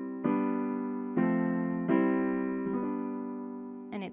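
Piano playing a C major chord in second inversion (G–C–E), struck four times about a second apart, each strike ringing and slowly fading before the next.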